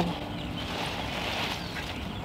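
Green bean plants rustling faintly as beans are picked by hand, over a steady outdoor background hiss.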